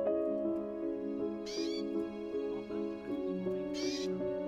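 Gentle music of soft, held notes, with two short, high, arching calls about two seconds apart from a pet canary in its cage.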